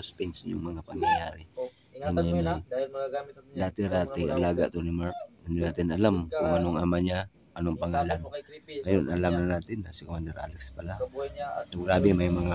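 Steady high-pitched chorus of crickets, running unbroken under people's voices.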